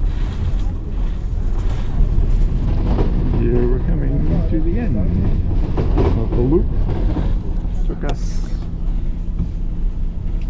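Outdoor city background noise with a steady low rumble. A person's voice is heard for a few seconds in the middle.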